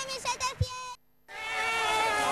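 A high-pitched voice singing out in long held notes, like the sung calling of the El Gordo lottery draw. It breaks off briefly about a second in, and then one long note is held.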